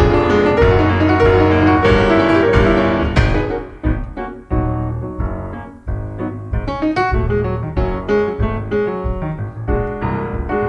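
Instrumental keyboard music with no singing: full, held chords for about three seconds, then thinning out to separate notes and short chords, quieter for a stretch in the middle.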